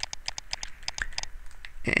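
Light clicks from computer input being worked while painting, in a rapid, uneven run.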